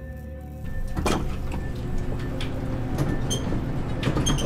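Eerie organ music fades out early on. It gives way to an elevator car running: a steady low rumble with a few clicks and knocks, under faint music.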